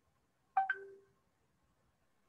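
A brief electronic chime about half a second in: three quick notes, the last one lower and held for a moment.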